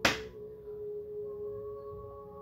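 Ambient background music of sustained, ringing singing-bowl-like tones holding steady, with one sharp slap at the very start.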